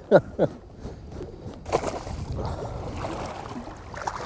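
Water splashing and sloshing in shallow river water as a hooked Atlantic salmon is brought in to be landed, starting suddenly a little under two seconds in and going on unevenly.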